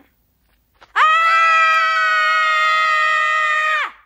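A young girl's long, high-pitched scream, starting about a second in and held on one steady pitch for nearly three seconds before cutting off.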